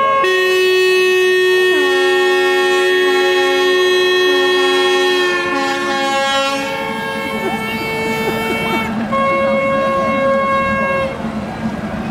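Music played on a reed or wind instrument: long held chords that change a few times, one note bending down into place about two seconds in.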